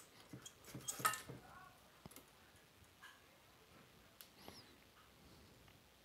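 Faint clicks, scrapes and small squeaks of a 5881 power tube being worked loose and pulled from its socket, mostly in the first second and a half, then near silence.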